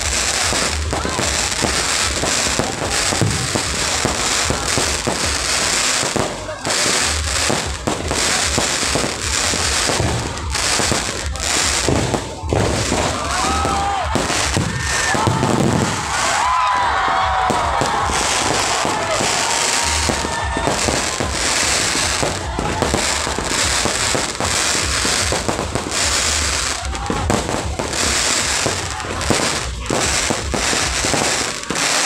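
Aerial fireworks display going off in a continuous, loud barrage of bangs and crackling bursts.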